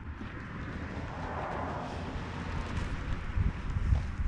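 Wind buffeting the microphone: a low, uneven rumble with a rushing hiss in the middle, and gusts that thump harder near the end.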